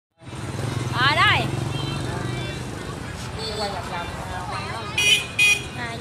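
Two short, shrill horn beeps about five seconds in, over a steady low engine hum and voices.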